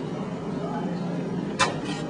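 Espresso machine being worked: a steady noise with two sharp clicks near the end as the portafilter is handled, against faint background chatter.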